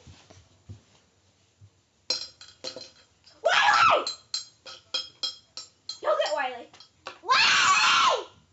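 A girl's voice in loud wordless shouts, two strong outbursts about three and a half and seven seconds in, amid a run of quick clicks and light clinks.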